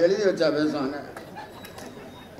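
A man's voice, low-pitched and brief, for about the first second, then a pause with only faint clicks.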